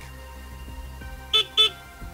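Two short motorbike horn beeps in quick succession, about a second and a half in, over steady background music.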